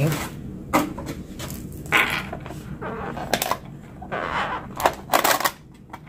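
Plastic takeout packaging being handled: a styrofoam box and a clear plastic dome lid crinkling and clicking in short irregular bursts.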